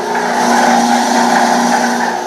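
A ribbon mixer's 10 HP direct-drive motor and heavy-duty gearbox running, a steady hum made of several held tones.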